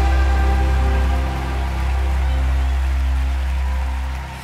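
Worship band playing an instrumental passage between sung lines: sustained low bass notes and held chords under a soft high hiss, easing slightly in level about a second in.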